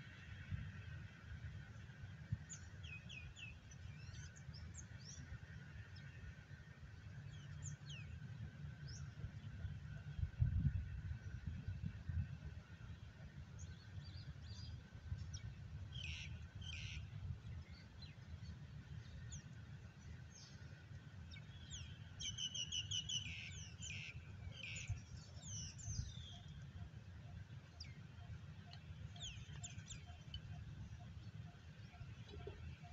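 Birds chirping and calling in scattered short bursts, busiest in the second half, over a low uneven rumble that swells about ten seconds in.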